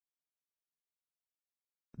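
Near silence: a completely dead gap with no sound at all.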